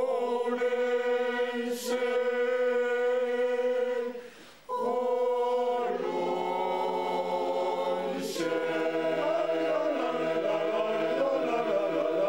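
Mixed choir singing a cappella in long held chords. There is a short break for breath about four seconds in. After about eight seconds the parts begin to move against each other.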